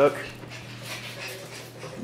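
A pet dog making faint, soft sounds over a steady low background hum, just after a man's voice trails off at the start.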